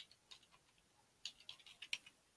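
Faint computer keyboard typing: scattered single key clicks, coming faster in the second half as a terminal command is typed.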